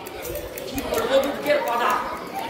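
People talking, with several voices overlapping as crowd chatter.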